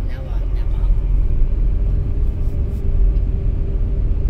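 Steady low rumble of a Fiat Egea Cross 1.6 Multijet diesel car driving, engine and tyre noise heard from inside the cabin, with a faint steady hum joining about a second and a half in.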